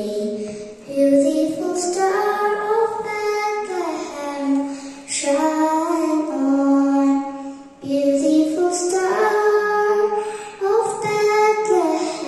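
A young girl singing solo into a microphone, in long held notes, with short pauses for breath about a second in and again near eight seconds.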